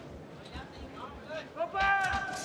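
Large arena crowd murmuring in the background, with scattered voices calling out. A man's voice rises clearly near the end.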